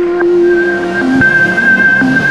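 Synthesized logo sting music: held electronic tones over a whooshing swell of noise, with a higher sustained tone coming in about half a second in.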